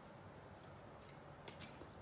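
Near silence, with a few faint clicks about a second in and near the end from scissors trimming paper.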